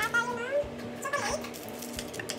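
Two short, high calls that bend up and down in pitch, like an animal calling: one right at the start lasting about half a second, and a shorter one just past a second in.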